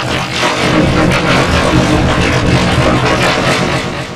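Loud, heavily distorted, effects-processed logo music: a dense, harsh wash of sound that starts abruptly and eases off near the end.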